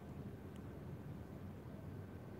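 Faint steady background noise: a low hum with an even hiss over it, and no distinct sound event.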